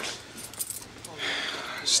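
A bunch of keys jingling and clinking as a key is worked off a metal key ring.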